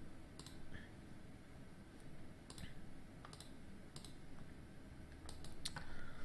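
Faint, irregular clicks of a computer mouse and keyboard, a dozen or so scattered over several seconds, with a quick run of them near the end.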